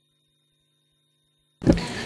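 Near silence with a faint steady hum, then a man's voice starts speaking about one and a half seconds in.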